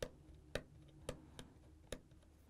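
Small screwdriver turning a screw to open a plastic terminal-block terminal, giving five faint, sharp clicks about half a second apart.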